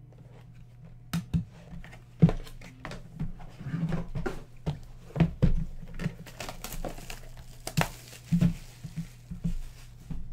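Hands handling trading-card items on a table: a hard plastic card case set down and a cardboard card box moved and handled. The sounds are irregular clicks, knocks and rustles, with one sharp knock about two seconds in.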